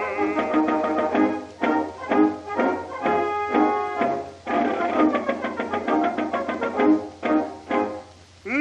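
Orchestra playing a march-time instrumental passage between the tenor's verses, repeated short accented notes, on a 1919 acoustic-era Victor 78 rpm recording with its narrow, boxy sound and faint surface hiss.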